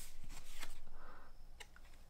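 Pokémon trading cards being handled, slid one behind another in a stack held in the hands: a few light clicks and a soft papery rustle about a second in.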